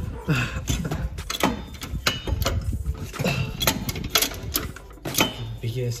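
Trolley floor jack being pumped by its handle: repeated sharp clicks and knocks from the pump mechanism, about two a second and unevenly spaced.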